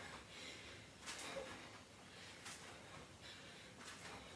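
A woman breathing hard from exertion, with short, hissy puffs about once a second between low background noise.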